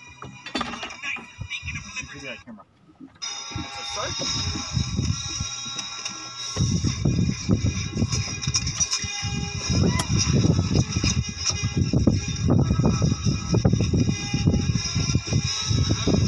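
A film soundtrack playing on a device in the boat: voices and music. From about six seconds in, a loud, uneven low rumble joins it and stays the loudest sound.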